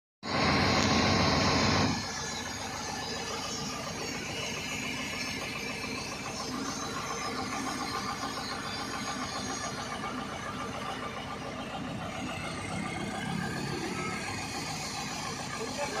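JCB 3DX backhoe loader's diesel engine running at idle, much louder for the first two seconds and then steady.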